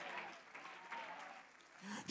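Faint applause from a church congregation, fading away.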